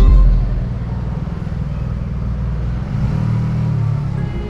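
Maxi-scooter engine running with a steady low rumble that swells about three seconds in.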